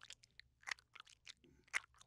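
Faint wet licking and lapping: a rapid, irregular run of short tongue smacks and clicks as spilled grape juice is licked off a hard floor.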